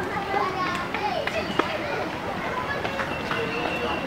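Background chatter of many people talking at once, children's voices among them, with no one voice standing out.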